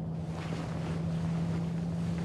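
A steady low hum under a windy, rushing noise, with a few faint brief rustles.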